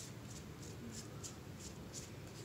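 Edge of a piece of cardboard dabbing and scraping wet acrylic paint onto paper: a quick run of faint scratchy strokes, several a second.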